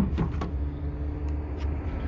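A few short plastic clicks as the tailgate handle trim is pulled back, then a steady low hum of a vehicle engine running nearby.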